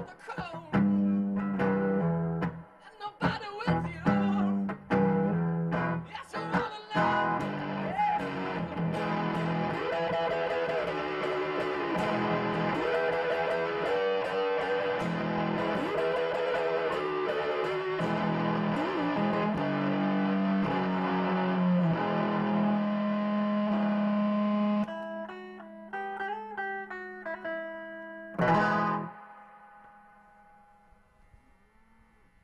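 Archtop guitar played with a metal slide through an amplifier: choppy chords with short gaps for the first several seconds, then continuous playing with sliding notes, thinning to a few ringing notes and a last struck chord that dies away just before the end.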